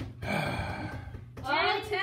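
Speech: a person talking from about a second and a half in, after a breathy vocal sound, over a steady low hum.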